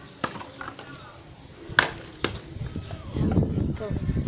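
Plastic bottle clacking against concrete as it is flipped and lands: one sharp hit about a quarter second in, then two more in quick succession just before halfway. A low rumble follows near the end.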